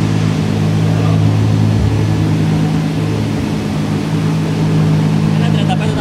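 Turbocharged Volkswagen VR6 engine running steadily at a constant pitch, not revving.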